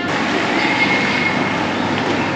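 Steady rushing noise with a faint high whine partway through.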